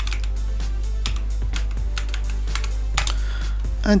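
Computer keyboard typing: a run of irregular keystrokes as a password is entered at a login prompt, over steady background music.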